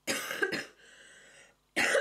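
A woman coughs twice in quick succession into her hand, followed by a fainter breathy sound.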